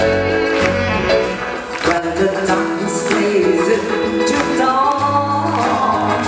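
Live pop band playing the opening bars of a song, with held melody notes that climb in the second half.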